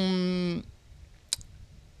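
A man's drawn-out spoken syllable trails off about half a second in, then a single sharp computer mouse click a little past halfway through.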